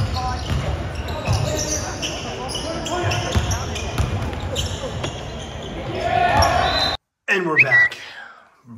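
A basketball dribbled on a hardwood gym floor, repeated thumps under players' and spectators' voices in a large hall. The gym sound cuts off abruptly about seven seconds in, and a voice follows.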